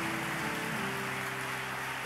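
Congregation applauding, an even patter of many hands clapping, over soft music holding sustained chords that shift about a second in.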